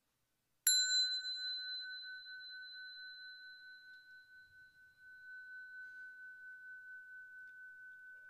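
A Buddhist bowl bell (rin) struck once, giving a clear ringing tone that fades slowly and is still sounding at the end. It is struck at the close of a guided meditation.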